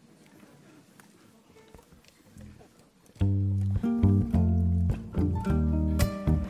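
After about three seconds of near quiet, an ensemble of ukuleles comes in together with the song's intro: strummed and plucked chords over deep, sustained bass notes in a steady rhythm.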